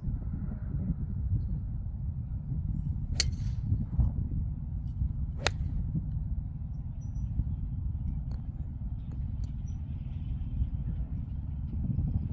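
A golf iron striking a ball off turf: one sharp crack about five and a half seconds in. Another sharp click with a short hiss comes about two seconds before it, all over a steady low rumble.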